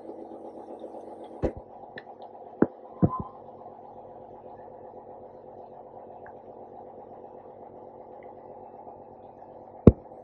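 Steady electric hum of an endoscopy unit's pump running, with a few sharp clicks as the endoscope's control section is handled, the loudest near the end.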